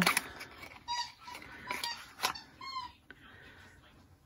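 A cat giving three short, high meows, mixed with sharp clicks of glass nail polish bottles being handled in an acrylic rack; the loudest click comes a little past the middle.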